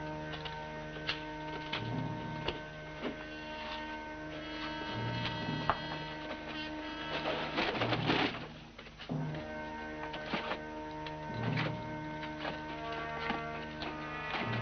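Suspense underscore: held orchestral notes over a low note that pulses about every three seconds. About halfway through there is a brief noisy rustle, and scattered light clicks run through it.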